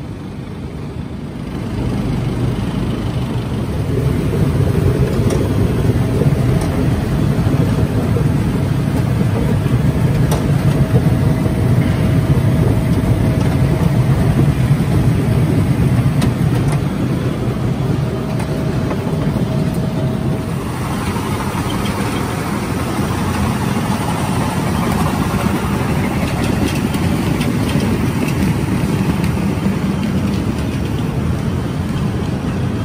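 Potato-handling machinery running: a conveyor belt and crate filler loading seed potatoes into wooden crates, a steady mechanical rumble with potatoes tumbling. It grows louder about two and four seconds in and carries a faint whine until about twenty seconds in, after which it turns brighter.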